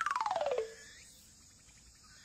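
Cartoon sound effect: a rapidly pulsing, whistle-like tone sliding steeply down in pitch, settling on a short low note just over half a second in.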